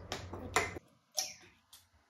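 A few sharp clicks and taps of eating utensils on plastic dishes at a meal, about half a second apart.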